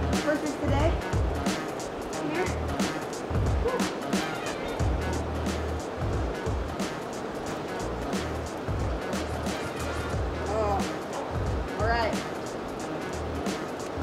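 Background music with a steady bass beat, and a voice heard briefly near the end.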